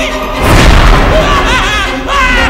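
Horror film soundtrack: a sudden loud boom about half a second in, followed by a man's frightened cries over the music.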